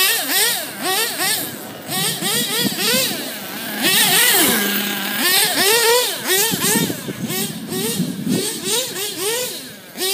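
Radio-controlled car's motor revving up and down under quick throttle blips, its pitch rising and falling two or three times a second, held steady for a moment near the middle.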